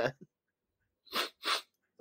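Two short sniffles about a third of a second apart, after about a second of silence: a cartoon alien weeping.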